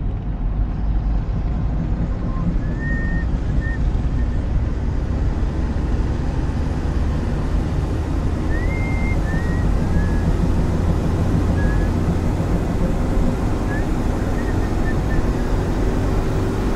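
Steady low road and engine rumble of a car driving, heard from inside the cabin, with a few faint short high chirps now and then.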